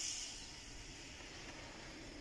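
Faint, steady hiss of moderate rain.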